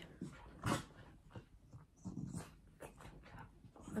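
Faint sounds from a small pet dog, with one short, sharper sound about a second in.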